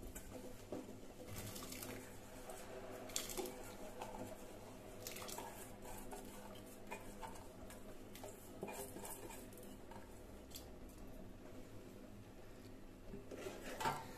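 Faint, scattered clinks and taps of utensils against a steel pot as soaked barnyard millet (jhangora) is added by hand to boiled milk, over a low steady hum.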